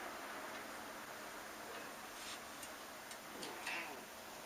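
Quiet room noise with a few faint, light ticks and rustles in the second half, from cats stepping about on magazines on a glass table.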